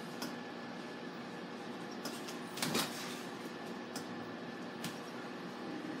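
A muffled thud about halfway through, a wrestler's leg drop landing on a mattress, with a few faint clicks over a steady background hum.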